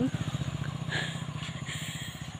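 Motorcycle engine running as the bike rides away, its low, rapid throb slowly fading.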